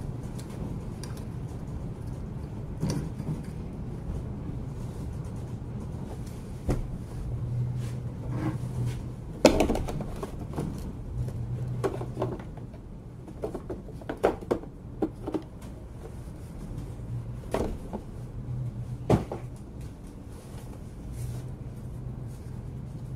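Scattered knocks and clatters of a cordless angle grinder and its parts being handled and set down on a workbench, over a steady low hum.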